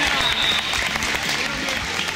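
Hand clapping from players and onlookers after a volleyball rally, with voices mixed in, echoing in a gym.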